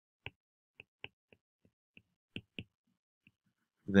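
Stylus tip tapping on a tablet's glass screen while handwriting: about eight short, faint clicks at an uneven pace.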